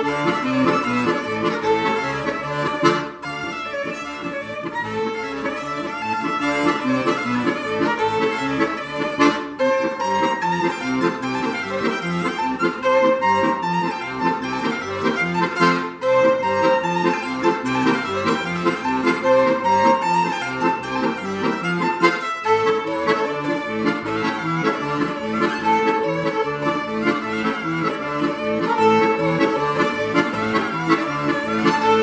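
Violin and accordion playing a duet, the music running on with a few short breaks between phrases.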